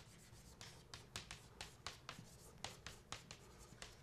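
Chalk writing on a blackboard: a faint, quick run of short taps and scrapes, about three or four strokes a second.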